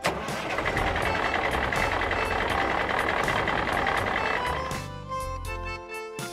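Truck sound effect over background music: a dense, noisy rumble that starts suddenly and fades out near the end.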